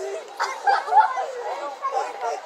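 Indistinct chatter of people talking, with no clear words.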